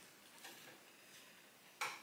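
Very quiet room with faint handling noise of a CD in its card sleeve being turned over in the hands, and a short sharp noise near the end.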